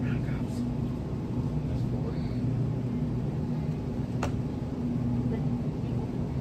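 Steady low hum of refrigerated freezer display cases, with one sharp click about four seconds in.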